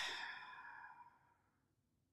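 A man's breathy exhale, like a sigh, starting loud and fading away over about a second, after which the sound cuts to silence.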